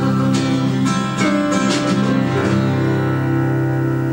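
Live acoustic folk music: an acoustic guitar strummed under long held chord tones, the closing bars of a song.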